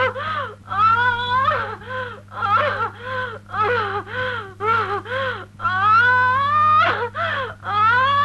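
A high voice wailing in grief without words, in a run of rising and falling cries about two a second, some drawn out into long upward glides, over a steady low hum.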